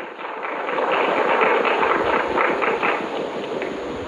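Audience applauding: dense clapping that swells over the first second, holds, and eases slightly near the end.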